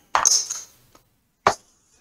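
Casino chips being handled on a felt craps table, with one sharp clack of a chip set down about a second and a half in.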